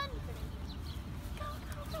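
Open-air ambience with a steady low rumble of wind on the microphone and faint, brief distant voices.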